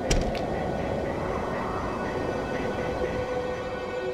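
Steady low rumbling noise with two sharp clicks just after the start, and a held tone coming in near the end.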